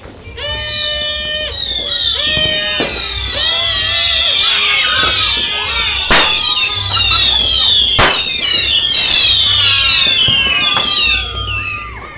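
New Year fireworks going off: many whistling fireworks screeching over one another, their whistles steady at first and then mostly falling in pitch, with two sharp bangs about six and eight seconds in.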